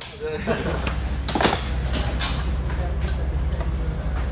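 Workshop noise in a rally service tent: several sharp knocks and clinks of tools and equipment over a steady low hum, with indistinct voices.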